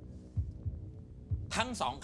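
Game-show suspense underscore: a low heartbeat-like thump about once a second over a steady low drone. A man's voice comes in near the end.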